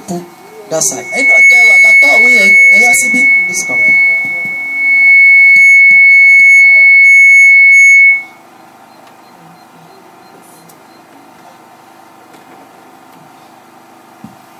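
A loud, steady high-pitched whine, with a voice under it at first; about eight seconds in it stops suddenly, leaving low room noise.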